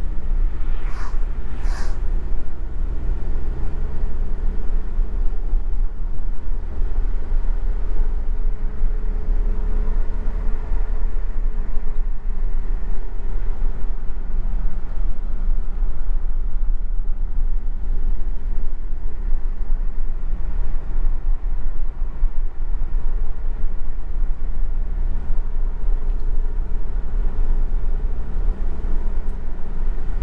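A taxi's engine and tyre noise heard from inside the cabin while driving: a steady low rumble, with a fainter hum rising and falling near the middle.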